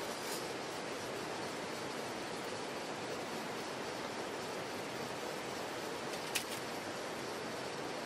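Steady rushing of a mountain valley stream. A single short, sharp click sounds about six seconds in.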